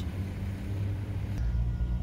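Low, steady rumble of a diesel locomotive idling, with the sound changing about one and a half seconds in.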